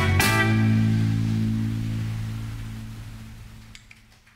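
A live blues band ends its song: one last hit of electric guitars, bass and drums about a quarter second in. The closing chord then rings on in the low strings and fades steadily away.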